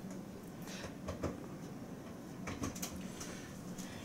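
A few faint, brief clicks and light knocks from handling things at a kitchen counter, over quiet room tone.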